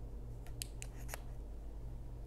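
Four quick clicks in well under a second, about half a second in, from the switches of two handheld green lasers being pressed to turn them both on, over a faint steady low hum.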